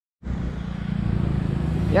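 A truck engine idling steadily, a low even running sound with a fine regular pulse, cutting in a moment after the start.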